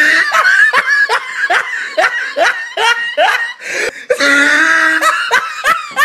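A person laughing hard: a run of short rising 'ha' bursts about three a second, breaking into one long drawn-out high note about four seconds in, then more bursts.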